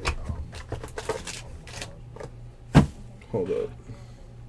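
Sealed trading-card boxes being handled: rustling and light clicks of cardboard and wrapping, with one sharp knock a little before three seconds in.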